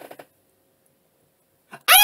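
A man's brief laugh, then near the end a short, very loud, high-pitched scream rising in pitch: a mock cry of pain as a wooden clothespin is clipped to his ear, faked as a joke.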